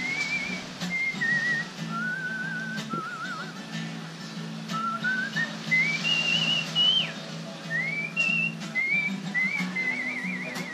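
A tune whistled by a person, with held notes that waver in vibrato and a run of notes stepping upward about halfway through, over a soft steady guitar accompaniment.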